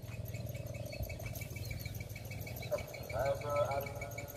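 Quiet open-air background: a steady low rumble of wind on the microphone with a faint steady hum above it, and a distant voice calling out briefly about three seconds in.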